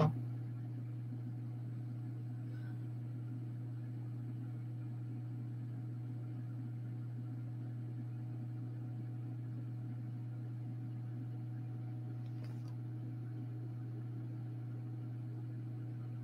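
A steady low hum that holds one level throughout, with one faint click about twelve and a half seconds in.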